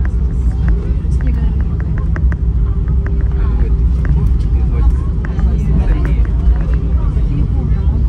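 Airbus A320 airliner rolling out after landing, heard from inside the cabin: a loud, steady low rumble of the wheels on the runway and the engines, with people's voices over it.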